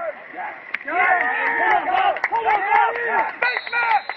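Several men shouting and yelling over one another, loud from about a second in: sideline football players reacting to a play.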